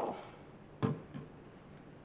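A plastic spray bottle set down on the counter: one light knock a little under a second in, followed by a fainter tap.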